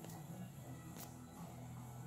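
Quiet room tone with a faint, steady low hum and a faint tick about a second in.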